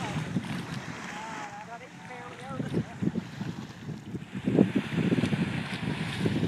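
Wind buffeting a handheld microphone in irregular gusts, heavier in the second half, over a steady hiss of wind and gentle surf on a beach.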